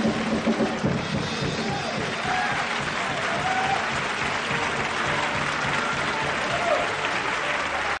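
Studio audience applauding over a band playing. The applause thickens into a steady clatter after about two seconds.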